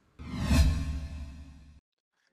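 A transition sound effect: a whoosh over a low sustained tone that swells in just after the start, peaks about half a second in and fades away by near the end.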